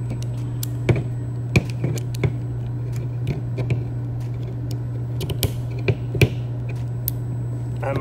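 Irregular small clicks and taps of a Klein multi-nut driver's metal and plastic pieces being handled, pulled apart and snapped back together on a tabletop, over a steady low hum.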